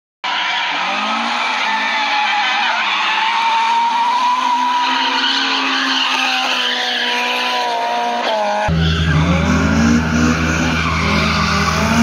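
Drift cars' engines revving up and down with tyres squealing as they slide through the corners. About eight and a half seconds in the sound changes abruptly and a heavier low rumble comes in.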